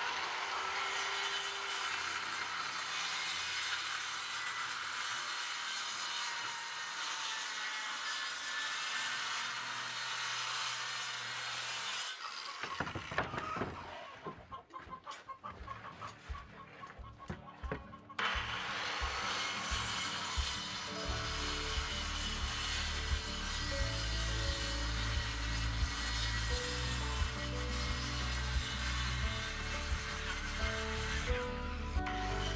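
Corded circular saw cutting through a plywood sheet in a steady run, stopping for a few seconds in the middle with a few knocks, then cutting again. Background music with a steady bass line comes in about twenty seconds in.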